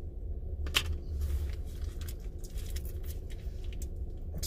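Light crinkling and clicks of a small condiment packet being handled, with one sharper click about three-quarters of a second in, over a steady low rumble in a car cabin.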